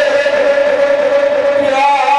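A man's voice chanting devotional verse through a microphone, holding one long note that steps up in pitch near the end.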